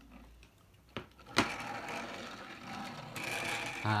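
Plastic toy tractor rolled across a tabletop, its wheels and gears rattling with a steady mechanical whirr after a couple of sharp clicks.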